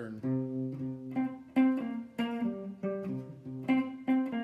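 Hollow-body electric guitar played clean, picking a steady run of single low notes in a shuffle rhythm: the box shuffle pattern, played within two frets.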